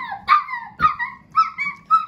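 A young girl's voice giving a quick run of six or so short, high-pitched squeals.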